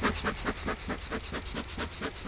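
Beekeeper's bellows smoker pumped in a quick, even run of short puffs, blowing smoke over the open hive's frames.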